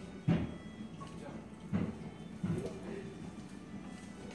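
Indoor café background of low voices and music, broken by three short, dull thumps, the first and loudest right at the start.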